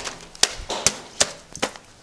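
A series of sharp slaps or knocks, about four in two seconds, irregularly spaced.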